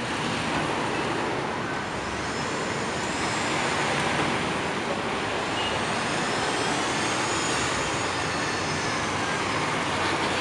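Steady city traffic noise: a continuous, even rush with no distinct events standing out.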